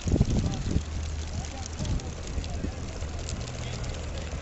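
Outdoor background noise: a steady low hum with faint distant voices, and a few thumps in the first second.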